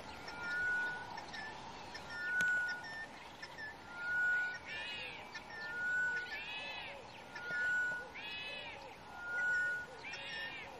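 Birds calling: a clear whistled note repeated about every two seconds, joined from about five seconds in by a richer call that rises and falls, repeated several times.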